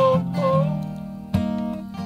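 Acoustic guitar strummed in a slow folk song, with a man's voice holding the end of a sung line at the start; a fresh chord is struck about a second and a half in.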